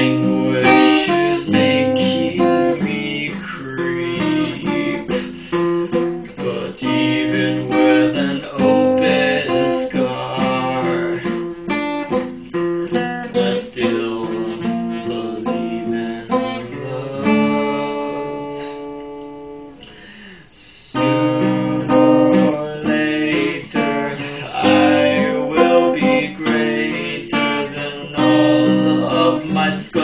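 Steel-string dreadnought acoustic guitar played solo: a steady run of strummed and picked chords. About two-thirds of the way through, one chord is left to ring and fade for a few seconds, then the playing picks up again.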